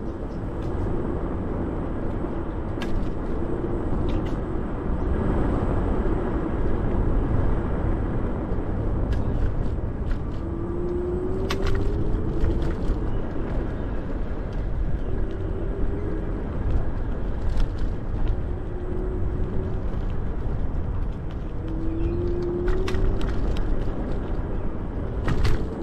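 Ninebot Max G30P electric kick scooter riding along a path: a steady rush of wind on the helmet-mounted camera's microphone and tyre rumble. A short rising whine from the hub motor comes in several times as it picks up speed, and the deck gives scattered clicks and knocks over bumps in the path.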